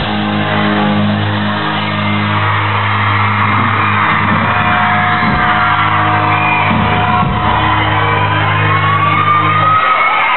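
Live amplified rock band playing: a long held chord with sustained low notes from guitar and bass under drums, cutting off just before the end, with shouts over the music.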